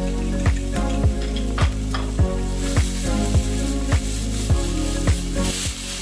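Diced chicken sausage sizzling as it browns in a nonstick skillet, the hiss growing louder about halfway through. Background music with a steady beat plays over it.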